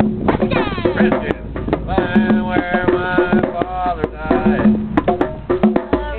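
Hand drums of a drum circle playing together: a dense, continuous rhythm of sharp hand strikes with ringing drum tones.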